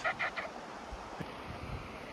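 Waterfowl giving a few short calls in the first half-second, then a low, steady outdoor background.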